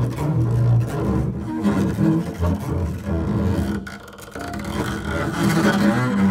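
Double bass bowed in free improvisation: a run of shifting low notes, dropping away briefly about four seconds in before the bowing picks up again.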